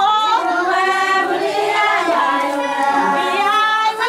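A group of women singing together, holding long notes that slide from one pitch to the next.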